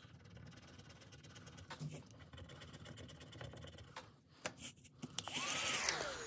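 Faint scratching of a pointed tool on a scratch-off card. About five seconds in, a small battery-powered mini desk vacuum whirs on over the card to clear the scratch-off shavings, its motor pitch gliding down as it spins down at the end.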